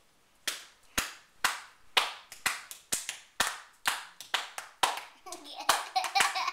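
Hands clapping in a steady rhythm, about two sharp claps a second, starting about half a second in.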